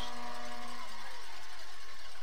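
Steady stadium background noise carried under the broadcast, with a low held hum that stops about a second in.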